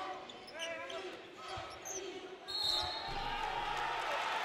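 Basketball bouncing on a hardwood gym floor during play, with voices in the arena. Crowd noise swells about two and a half seconds in.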